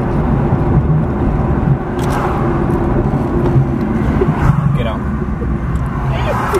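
Steady road and engine rumble inside the cabin of a moving car.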